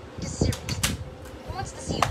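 Plastic DVD case being handled and closed, with two sharp clicks under a second in as the case snaps shut.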